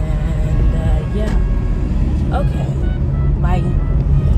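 Steady low rumble inside a car cabin, with a few short vocal sounds from the woman in the driver's seat.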